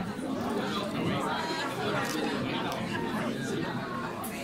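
Crowd chatter: many people talking at once, voices overlapping into a steady murmur with no single speaker standing out.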